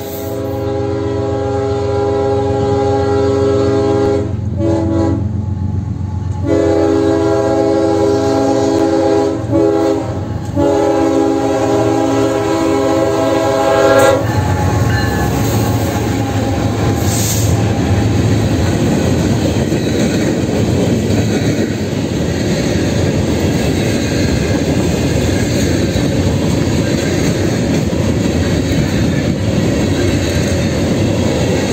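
Diesel freight locomotive horn sounding several long chord blasts with short breaks, the last cut off sharply about halfway through. Then a long string of freight gondola cars rolls past close by, the wheels clattering and rumbling steadily on the rails.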